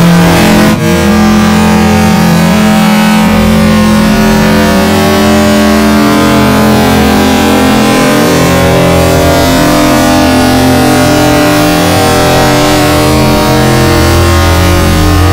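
Loud, heavily distorted effects-processed audio: a buzzing drone of held tones that drops out briefly about a second in and shifts in pitch a few times.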